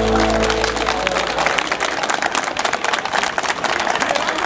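Sustained chords of folk dance music die away in the first second, followed by an audience applauding.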